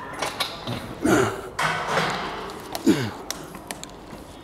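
A man grunting with strain as he lifts a pair of dumbbells through repetitions: two short grunts that fall in pitch, about a second in and about three seconds in.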